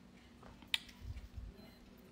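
Quiet room with faint handling noise: one short click a little before the middle, then a soft low bump about a second in.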